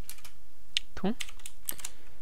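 Typing on a computer keyboard: a series of short keystroke clicks.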